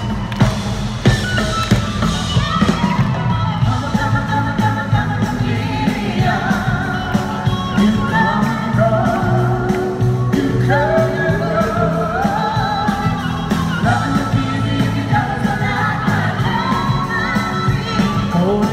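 Live rock-pop band with drums, bass and keyboards playing through an arena PA, a lead vocalist singing a melody with vibrato over it. It is heard from high up in the arena stands.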